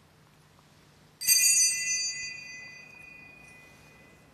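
A small altar bell struck once, a little over a second in. It rings out high and bright with several tones and fades away over two to three seconds.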